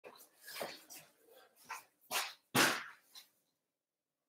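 A dog barking faintly: a handful of short barks, the last one, near the end, the loudest.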